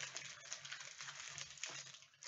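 Faint rustling and light clicking of foil-wrapped trading-card packs being handled and shuffled.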